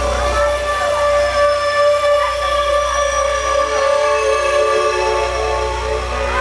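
Live wedding band playing instrumental music: a long held melodic note with sliding ornaments over a low drone.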